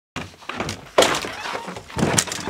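A large agricultural spray drone's frame and folding arms clunking and knocking as it is unloaded off a trailer and mishandled, with the heaviest thunk about a second in. It is a botched unload by one person alone.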